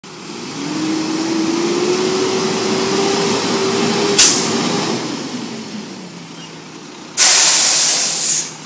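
Peterbilt 320 front-loader garbage truck's engine rising in pitch as it pulls forward, with a short sharp burst of air at about four seconds. The engine then falls back, and near the end the air brakes give a loud hiss lasting about a second.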